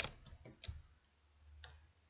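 Three or four irregular sharp clicks with soft low knocks, the loudest at the very start, from a crochet hook and hands working yarn close to the microphone.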